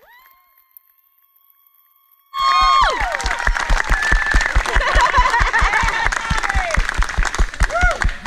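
Music: a faint held note, then about two seconds in a song starts loudly with a steady, fast beat and singing.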